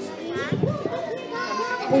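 Several children's voices chattering and overlapping in a hall, with a boy starting to speak into a microphone right at the end.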